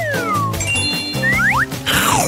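Upbeat background music with whistle-like cartoon sound effects that glide in pitch: a falling glide at the start, then two quick rising glides a little past halfway.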